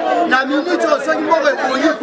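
Speech only: a man talking at close range, with other voices overlapping around him.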